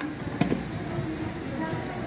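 Refrigerator hermetic compressor running with a steady low hum, the motor working normally. A single sharp click comes about half a second in.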